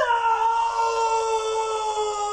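A man's long, sustained scream held on one nearly steady pitch, dipping briefly in pitch as it starts.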